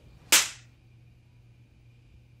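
A single sharp slap, a hand striking a face, about a third of a second in and dying away quickly.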